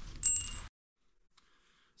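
A single bright metallic ding near the start, ringing on one high pitch for about half a second.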